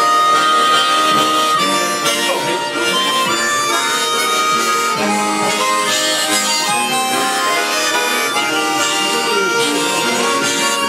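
Several harmonicas playing together, a large chord harmonica among them, in a continuous run of held notes and chords.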